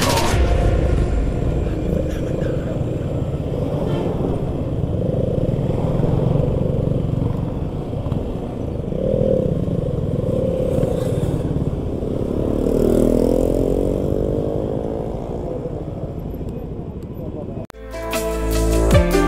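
Motorcycle engine running under way, with wind rushing over the helmet-mounted microphone and surrounding traffic; the revs rise about twelve seconds in. The sound cuts off suddenly just before the end.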